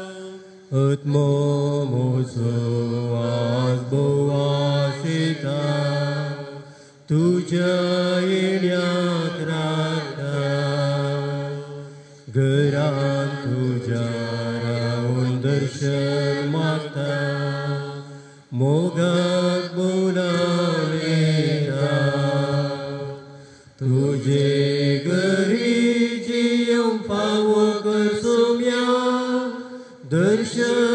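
A priest's solo voice chanting a prayer of the funeral liturgy into a microphone, held on a nearly level reciting note with small steps and a fall at each phrase end, in five long phrases with short breaths between.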